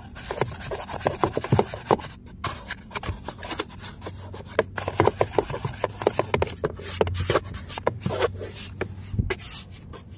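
A detailing brush scrubs a plastic car door panel and door pocket that are wet with cleaner, in quick, irregular rubbing strokes.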